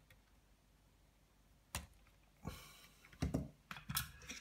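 After a quiet second or two, a few sharp clicks and a brief rustle of hands handling wires and tools in a metal amplifier chassis, with a quick cluster of clicks near the end.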